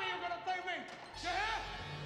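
A man shouting in two drawn-out, wordless yells, about half a second and a second and a half in.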